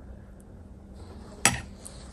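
A metal spoon stirring wet herbs in a glass mason jar, faintly, then a single sharp click from the spoon about a second and a half in.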